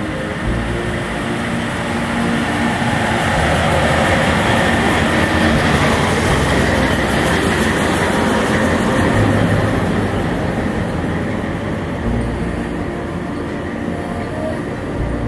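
FS D343 diesel-electric locomotive passing close by with its engine running. It is followed by its sleeping car rolling past, with wheels rumbling on the rails, loudest in the middle as the train goes by.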